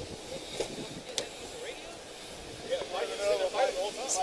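Outdoor background hiss picked up by a police body camera, with a single sharp click a little over a second in. In the last second or so, indistinct voices start talking.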